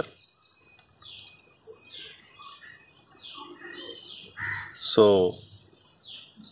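Faint birds calling: a run of short high chirps, about two a second, with a man's voice saying one word near the end.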